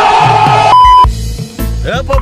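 A loud yell cut off under a second in by a short, steady censor-style beep, followed by a bass-heavy hip-hop beat.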